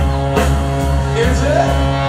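Live rock band playing: electric guitars and bass held over a drum kit, with a few cymbal-and-drum hits.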